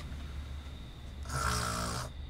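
A sleeping child snoring once, a single snore starting a little over a second in, over a steady low hum.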